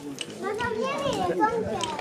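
Children's voices talking and calling out in a crowd, high-pitched and rising and falling in pitch, from about half a second in.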